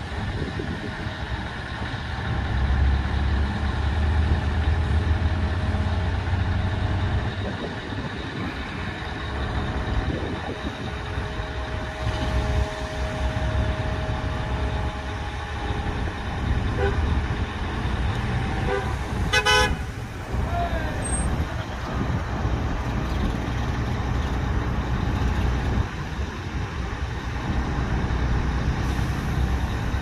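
Mobile crane's diesel engine running steadily as it lifts a rooftop commercial unit, louder for the first several seconds. A brief horn toot comes about two-thirds of the way in.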